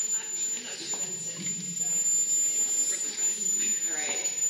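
A steady high-pitched squeal held on one pitch, edging slightly higher near the end, over a woman's speech.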